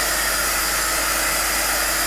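Electric heat gun blowing hot air over a wet acrylic pour painting. It gives a steady rush of air with a faint steady hum.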